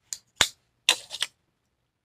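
A quick run of four short, sharp clicks and taps within about a second, the second with a low knock to it.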